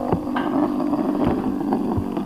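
Cosmic Pegasus Beyblade spinning on a wooden tabletop: a steady whirring hum with scattered light ticks and knocks as it skids over the wood.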